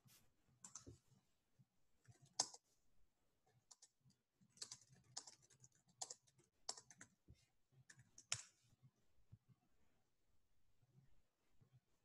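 Near silence broken by a handful of faint, sharp clicks and taps spread over several seconds, the loudest about eight seconds in.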